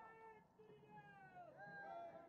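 Near silence with a few faint, drawn-out voices in the background, their pitch wavering and sliding down.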